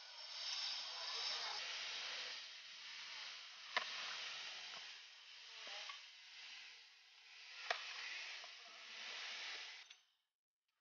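Eggplant plants' leaves and stalks rustling in swells as they are handled during picking, faint, with two short sharp clicks, one about four seconds in and one near eight seconds.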